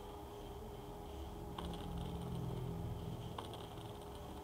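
Two faint, sharp computer-mouse clicks, a little under two seconds apart, over a steady low electrical hum.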